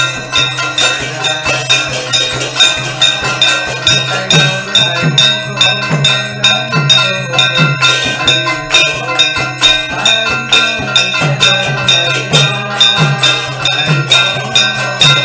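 Kirtan music: a mridanga (khol) drum, its deep bass stroke bending upward in pitch about twice a second, under fast, steady ringing of brass hand cymbals and bells.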